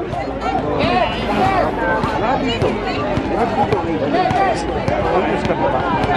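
Several voices talking over one another at once: basketball players and onlookers on an outdoor court chattering during a stoppage, with a steady low rumble underneath.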